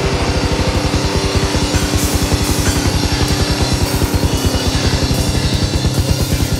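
Rock band playing with the drum kit to the fore: a fast, even run of double bass drum strokes, about eight or nine a second, under cymbal wash, with guitar and bass holding notes.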